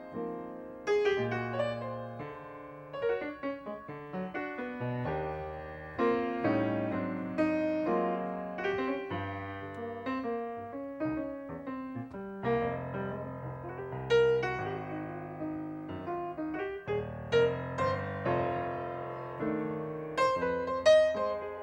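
Steinway grand piano played solo in a jazz style. Struck chords and single-note lines follow one another, each ringing and decaying.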